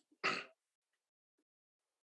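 A person clears their throat once, briefly, just after the start.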